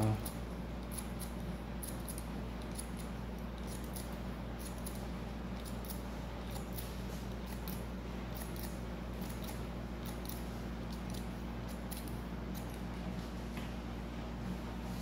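Hair-cutting scissors snipping hair in many quick, irregular cuts, scissor-over-comb trimming, over a steady low hum.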